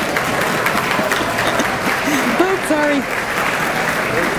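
Audience applauding steadily, with a few voices heard over the clapping.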